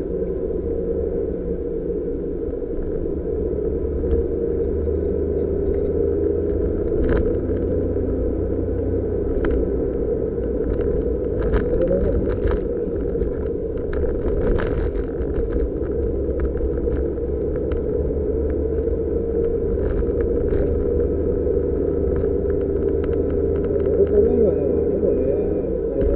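Cabin noise of a Suzuki Jimny JB23 driving at a steady pace: its small turbocharged three-cylinder engine and road noise make a continuous rumble, with occasional sharp clicks scattered through it.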